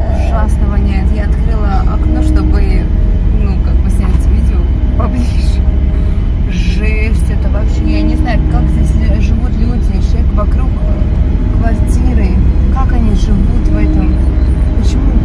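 Steady low rumble of a car driving, heard inside the cabin, with voices talking over it.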